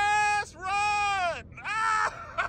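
A man's voice in drawn-out, high-pitched calls: three long held notes, the middle one falling away at its end.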